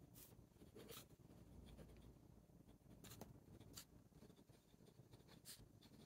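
Faint scratching of a fine-nib wooden kit fountain pen writing on paper, with a few brief, slightly louder strokes.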